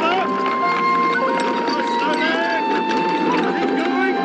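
Film soundtrack: orchestral music with long held notes, over a background of crowd voices crying out.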